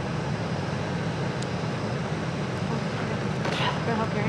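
Vehicle engine idling with a steady low hum.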